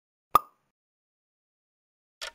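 A single short pop sound effect, about a third of a second in, with a quick decay; it marks a screen transition.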